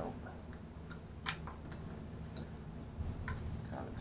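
Light clicks and taps of a small hinged metal tin being handled and opened, a few scattered ticks over a few seconds. Under them runs a low steady rumble of a truck delivering a dumpster.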